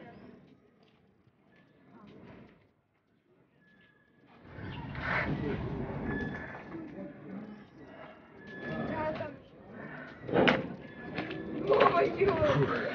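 A man's heavy, strained breathing and grunts as he works a wrist-rolling set while hanging from a pull-up bar. The effort starts about four seconds in and peaks in two sharp bursts near the end.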